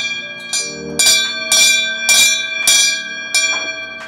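Small brass hand bell struck repeatedly by pulling its cord, about two strikes a second, each ring carrying on into the next, then stopping suddenly. It is rung to signal the operator to send the cable car down.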